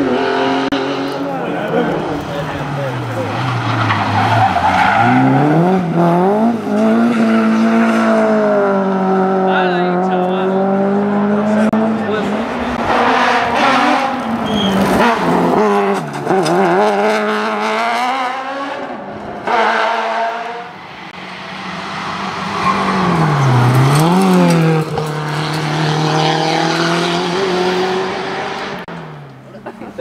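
Competition car engines at full throttle up a hillclimb, revving up through the gears with repeated rising pitch and sharp drops at each shift. Several cars go by in turn, with brief lulls between passes.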